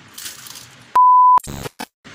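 A loud, pure, single-pitch beep of about half a second, about a second in, followed by two brief crackly bursts. This is an edited-in sound effect at a transition. Before it there is faint chewing.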